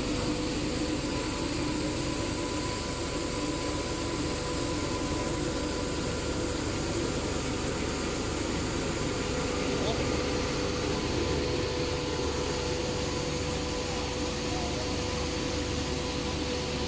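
Triple-screw plastic compounding extrusion line and its strand pelletizer running, a steady machine drone with a constant hum.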